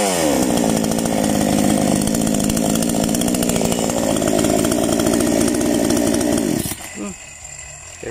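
Black Bull 58cc chainsaw's two-stroke engine running steadily, its pitch rising slightly about halfway through, then shut off abruptly shortly before the end.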